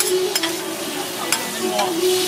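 Food sizzling on a hot steel flat-top griddle, with a metal spatula scraping and clicking against the plate, about three sharp taps.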